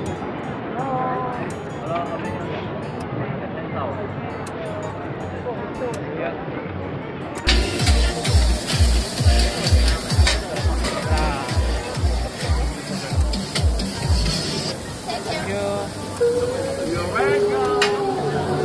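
Street crowd chatter and passing voices. About seven seconds in, music with a heavy bass drum beat, about two beats a second, cuts in suddenly and runs for about seven seconds before stopping.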